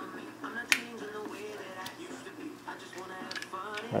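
A sharp metal click about three-quarters of a second in, then a few lighter clicks, as a magnet and the steel parts of an LS hydraulic lifter are handled. Faint background music plays underneath.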